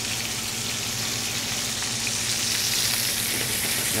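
Hanger steaks searing in hot oil in a frying pan, sizzling steadily, with a pat of butter just added and starting to melt into the oil.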